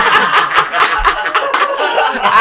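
Several men laughing hard together in short, breathy bursts.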